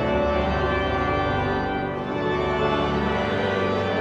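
Pipe organ playing sustained chords, with a brief dip in loudness about halfway through.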